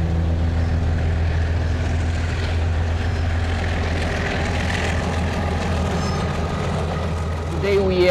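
Diesel locomotive hauling a passenger train over a steel girder bridge: a steady low engine drone, with the rumble of the wheels on the rails growing louder in the middle as the train comes onto the bridge. A man's voice begins near the end.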